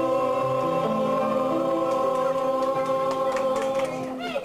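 Background choral music: voices singing long held chords, the lower parts moving to new notes while the upper notes stay steady.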